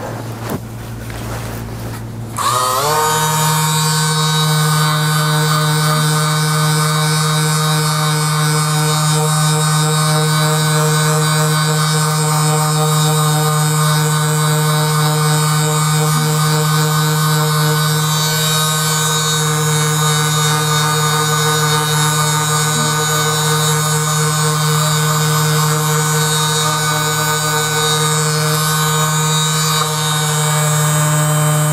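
Handheld percussion massage gun switched on about two and a half seconds in, its motor rising briefly in pitch and then running at a steady, loud hum while pressed against the neck and shoulder.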